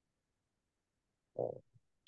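Near silence, broken about a second and a half in by one short, low sound lasting about a quarter of a second, followed by a fainter blip.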